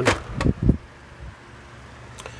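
Handling noise: a sharp click and a few dull, low bumps in the first second, then quiet room tone with a faint steady low hum.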